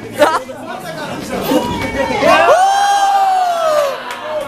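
Onlookers talking, then about halfway through one long, high shout from a spectator, held nearly two seconds, with its pitch sliding down as it ends.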